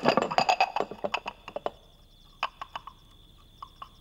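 Porcelain gaiwan lid clinking against the rim of its teacup: a quick run of small clinks for about the first second and a half, then a few single taps spaced apart.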